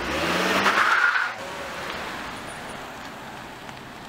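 SUV pulling away: its engine rises in pitch as it accelerates for about a second, then the sound drops and fades as the car drives off.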